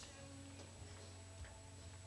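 Near silence: the room tone of a hall, with a steady low hum and a faint tick about one and a half seconds in.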